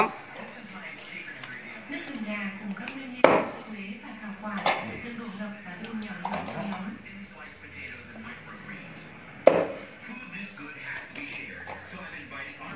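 Low background voices, with three sharp knocks about three, four and a half, and nine and a half seconds in.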